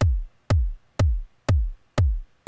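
Electronic bass-drum sample from the JR Hexatone Pro sequencer app, playing steady quarter notes at a tempo of 122: evenly spaced kicks about two a second. Each kick has a sharp attack and a short low tail that drops in pitch.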